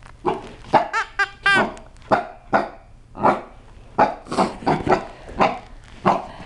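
A small seven-month-old Chihuahua–Cocker Spaniel mix puppy barking over and over in short, sharp barks, some of them high and yippy, at an irregular pace of about two or three a second. It is the wary barking of a puppy scared of a new plush toy.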